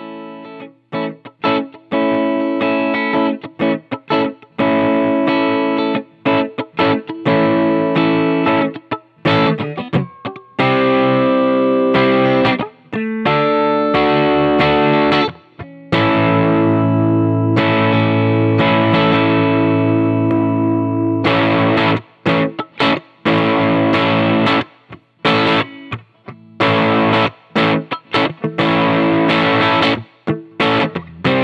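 Electric guitar played through an amplifier: short stop-start chord stabs with brief gaps, then longer ringing chords from about ten to twenty seconds in, then choppy chords again near the end.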